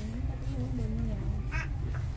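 A person's voice drawn out on a long, wavering note that fades after about a second, then a brief spoken sound. A steady low rumble runs underneath.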